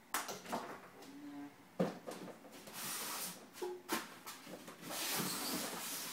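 Handling noise from unpacking: several sharp knocks and clicks, and two longer stretches of crinkling rustle from packaging in the second half, as the iMac's power cable is unwrapped and set down.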